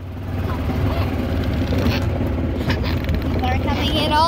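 Go-kart engine running as the kart drives along, a steady low rumble that gets louder in the first half-second.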